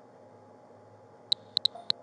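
Four short, high-pitched electronic chirps in quick succession in the second half, over a faint steady background hum.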